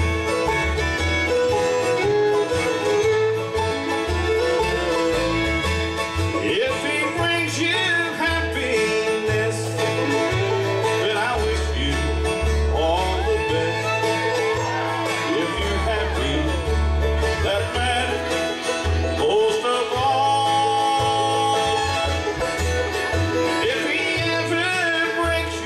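Bluegrass band playing together on fiddle, acoustic guitars, five-string banjo and upright bass, with a plucked bass line under gliding fiddle lines.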